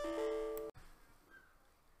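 Windows error alert chime of two notes, sounding as a PuTTY fatal-error dialog pops up because the rebooting server has dropped the SSH connection. It cuts off abruptly under a second in.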